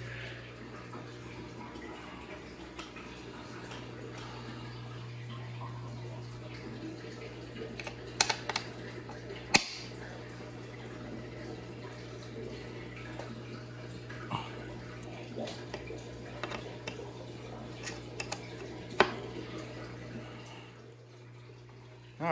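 Scattered light clicks and taps of small hand tools and metal parts being handled while screws are tightened on an RC dragster chassis, the sharpest about nine and a half seconds in, over a steady low hum.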